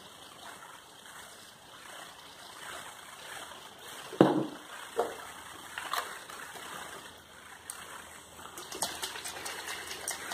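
Homemade aftershave splash trickling as it is poured into a small plastic bottle. A sharp knock about four seconds in and a few lighter ones follow as the bottle is handled and capped, with quick rattling clicks near the end as it is shaken.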